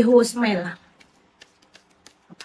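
A woman speaking Khmer for under a second, then a pause broken by a few faint clicks.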